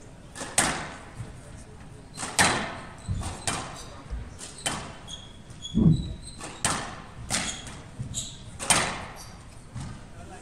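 Squash rally: the ball cracking off rackets and the court walls about once a second, each hit sharp with a short echo, the loudest and deepest near the middle. Short high squeaks of court shoes come between the hits.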